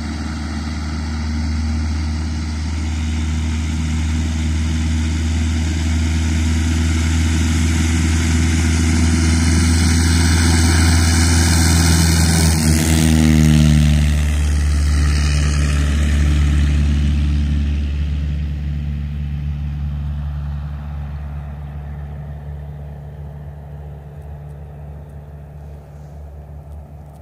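Cessna 172 single-engine propeller plane moving along the runway past the listener: a steady engine-and-propeller drone that grows louder, drops in pitch as the plane goes by about halfway through, then fades away.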